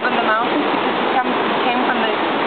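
Steady rush of falling water, loud and even throughout, with brief snatches of voices over it.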